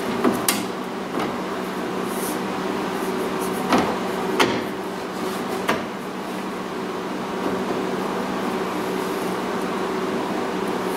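A few short knocks and rubs as a metal reinforcing piece is handled and pressed up against the inside of a car's roof, over a steady hum.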